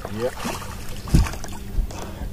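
A hooked bass splashing at the water's surface as it is lifted out beside the boat, with a dull low thump about a second in.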